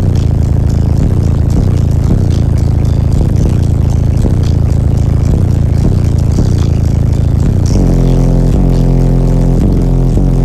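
Bass-heavy music played very loud through a ported subwoofer box in a semi truck's cab, the deep bass dominating over a steady beat. About three quarters of the way in, long held bass notes take over.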